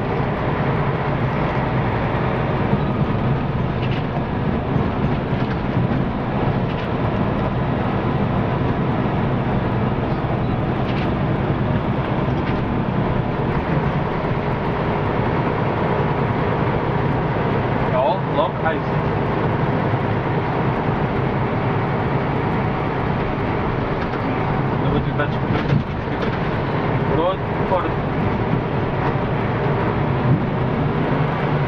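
Bus engine and road noise heard from inside the cabin at the front, a steady drone while the bus drives along.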